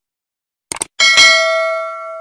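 Subscribe-button animation sound effect: a quick double mouse click, then a bell chime about a second in that rings with several overtones and fades away.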